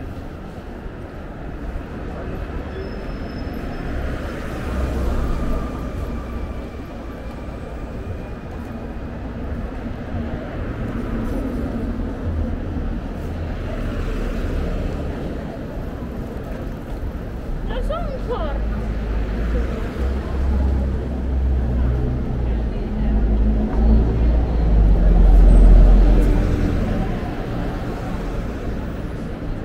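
City street traffic heard from the pavement: cars passing with a low rumble, and a city bus going by near the end, the loudest moment. People's voices among the passers-by.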